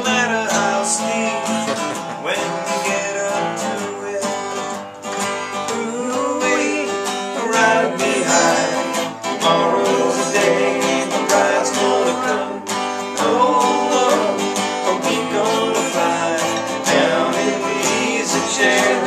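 Two acoustic guitars strummed together in a country-style song, an instrumental stretch between sung verses.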